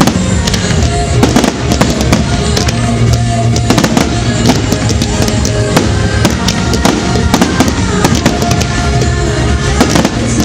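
Fireworks going off in a dense barrage: aerial shells and rising comets make many sharp bangs a second, with crackle between them. Music plays under the bangs throughout, the show's pyromusical soundtrack.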